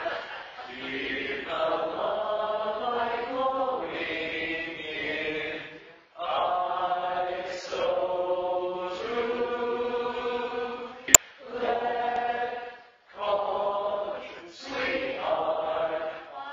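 Male barbershop quartet singing a cappella in close four-part harmony, holding chords in phrases with short breaths between them. A single sharp click sounds about two-thirds of the way through.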